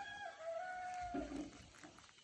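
A rooster crowing: one long held call that ends about a second in, followed by a brief lower note.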